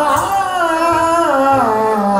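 Qawwali singing: a male lead voice holds a long, ornamented melodic line over harmonium accompaniment, the line gliding down in pitch near the end.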